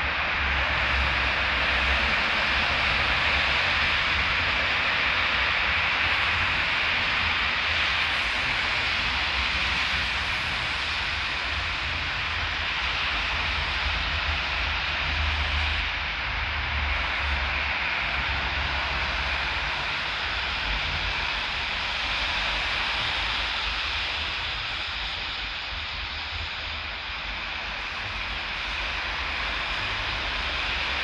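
Steady road traffic on a wet street: car tyres hissing on the wet asphalt as vehicles pass, with a low uneven rumble underneath.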